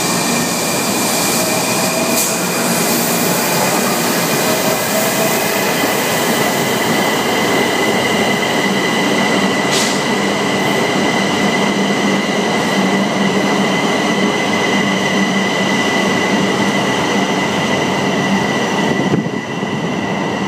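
A Metro subway train passing at close range in a tunnel: a dense, steady rush of wheels on rail with several steady high-pitched tones above it, and a couple of sharp clicks. Near the end the noise dips briefly as the train clears.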